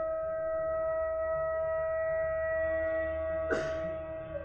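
Carnatic bamboo flute holding one long steady note, with a short breathy burst of air about three and a half seconds in as the phrase moves on.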